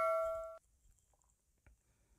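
A bell-like ding sound effect: one ringing tone with overtones, fading away and then cut off abruptly about half a second in, followed by near silence.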